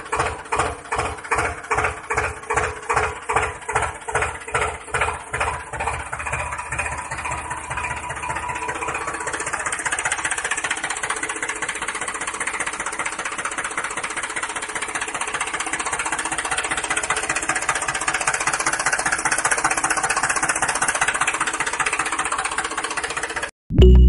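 Tractor engine chugging in slow, even pulses that quicken and settle into steady running after about six seconds, then cut off abruptly near the end.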